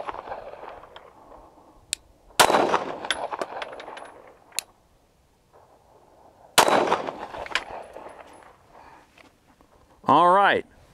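Glock 19 Gen 3 9mm pistol firing slow, deliberate single shots. Two loud shots about four seconds apart, each trailing off in a long echo, with a few fainter sharp ticks in between.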